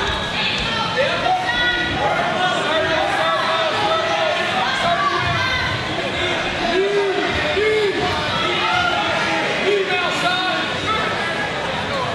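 Fight crowd and cornermen shouting and calling out, many voices overlapping at a steady level.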